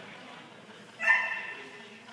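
A dog barking once, sharply, about a second in, as it runs an agility course.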